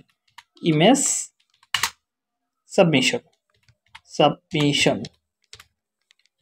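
Typing on a computer keyboard: a few scattered key clicks, the clearest about two seconds in.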